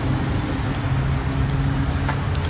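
Steady low hum of a car engine idling, with traffic noise around it.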